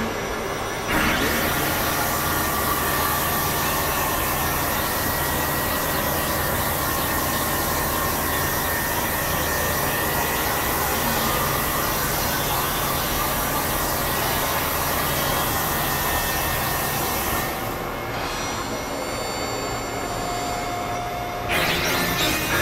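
Experimental electronic noise music: a dense, steady synthesizer noise drone that cuts in about a second in, with a low hum underneath. Near the end it thins out to a quieter stretch with a few steady high tones, then the dense noise comes back just before the end.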